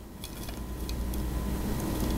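Steady low background hum with a few faint light clicks and taps as a metal teaspoon puts baking soda powder onto a toothbrush.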